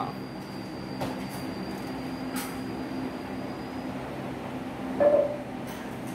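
Steady mechanical hum with a few held tones, with a brief louder sound about five seconds in.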